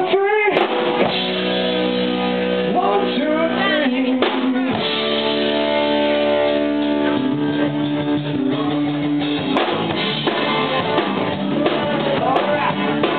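A live rock band playing, with guitar and keyboard holding long chords. The drum kit comes in with a steady beat about seven seconds in.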